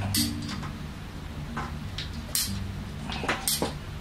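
Hand PVC pipe cutters working through three-quarter-inch PVC pipe: a handful of separate sharp clicks and snaps, spread through a few seconds.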